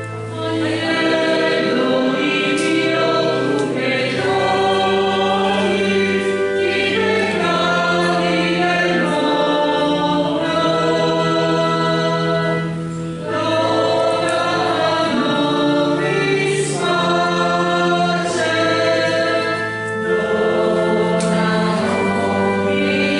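A choir singing a hymn in long held phrases over sustained low accompanying notes, with short breaks between phrases about halfway through and again near the end.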